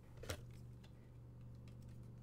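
Trading cards being handled at the table: one light click about a third of a second in, then a few faint ticks, over a low steady hum.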